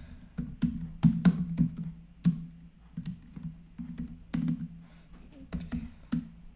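Typing on a computer keyboard: irregular key clicks, the loudest keystrokes a little after one second and again after two seconds, over a steady low hum.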